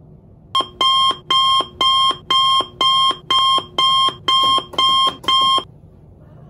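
An alarm beeping in a steady rhythm, about two bright beeps a second, ten in all, then stopping about a second before the end.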